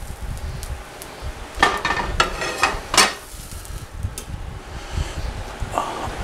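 Metal kitchen tongs and utensils clinking and knocking as a seared chicken breast is set down on a wooden cutting board: a short clatter about two seconds in and a sharp click about a second later, over a low steady hum.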